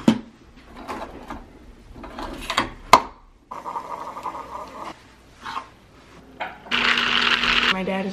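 Keurig single-serve coffee maker brewing into a glass of ice: a knock as the glass is set down, a click about three seconds in, then the machine's pump running with a steady hum. Near the end comes a louder hiss lasting about a second.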